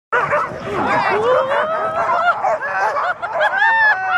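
A team of harnessed sled dogs yelping, barking and whining all together in excitement as the run gets under way: many overlapping high cries, some short and some long and rising.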